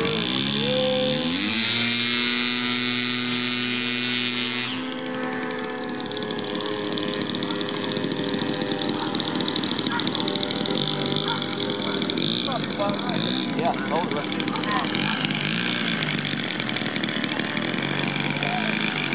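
Electric motor and propeller of a Precision Aerobatics Addiction RC aerobatic plane: a whine that rises in pitch over the first second or so, holds steady, then drops off sharply about five seconds in, and afterwards wavers up and down in pitch as the plane flies its manoeuvres.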